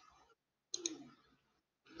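Two quick clicks of a computer mouse button, a fraction of a second apart, about three quarters of a second in.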